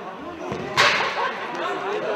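A single sharp smack a little under a second in, ringing briefly in the hall, over men talking close by.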